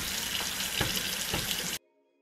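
Kitchen tap running into a stainless-steel sink, a steady splashing stream with a few short knocks. It cuts off suddenly near the end.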